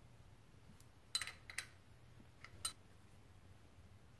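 A few faint, sharp metallic clicks and clinks of hand tools, a tensioner tool and a short 17 mm wrench, working the timing belt tensioner on a VW ABA 2.0 engine. They come in small clusters about a second in and again a little later.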